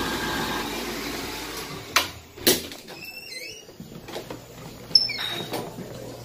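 Automatic hand dryer blowing, fading out after about two seconds. Then two sharp clicks, a few faint high squeaks, and another click near the end over quieter background noise.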